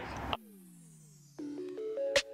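Electronic synthesizer background music starting about a second and a half in, after a brief falling-pitch glide.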